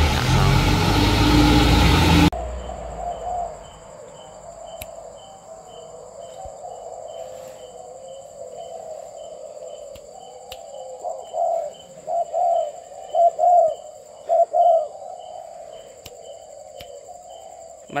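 A minibus engine and road traffic on a wet street for about two seconds, cut off suddenly. Then caged spotted doves cooing: a continuous background of calls, with a run of louder coos well past the middle.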